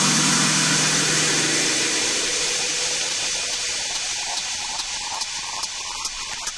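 Hard techno track with its kick drum dropped out, leaving a hissing noise wash and a low held tone. The tone dies away about two seconds in, while the hiss slowly fades.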